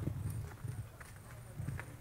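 Irregular knocks and thuds of a person walking on crutches over rough ground, over a steady low rumble.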